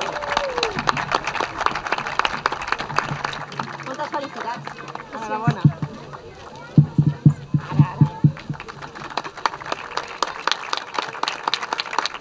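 Audience applauding, with dense steady clapping and some voices talking over it.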